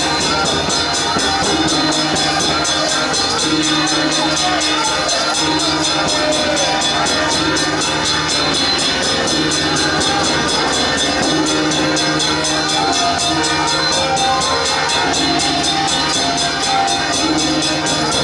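A Taiwanese road-opening drum troupe (開路鼓) playing loud and without a break: a big red barrel drum and hanging gongs beaten together at a fast, steady beat, with a melody line carried over the top.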